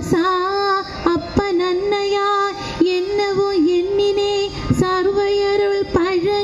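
A woman singing solo into a handheld microphone, holding long steady notes with a few short breaks for breath.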